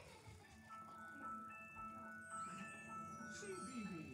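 A children's bedtime-story programme's opening theme: a soft, tinkling chime-like melody coming faintly from a television speaker across the room. It starts about half a second in.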